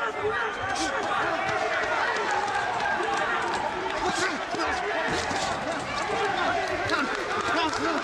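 Ringside voices of men shouting and calling out through a boxing bout, overlapping without a break. Several sharp slaps of gloves landing are heard over them.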